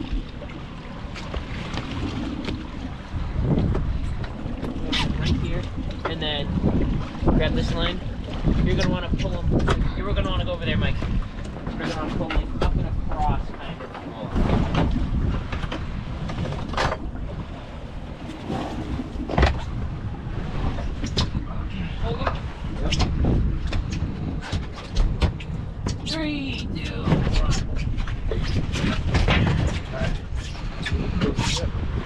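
Wind buffeting the microphone over water, with repeated sharp knocks and thuds on a fiberglass boat's deck and transom. Indistinct voices come and go.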